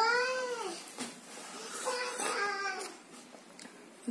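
A small girl's voice making a drawn-out high call that rises and falls, then a second shorter run of sing-song sounds about two seconds in.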